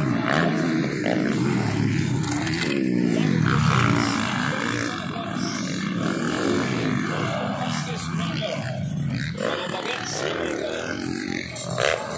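Motocross dirt bike engines revving as the bikes race past on a dirt track, the engine pitch rising and falling with each twist of the throttle and gear change, louder in the first few seconds, with voices underneath.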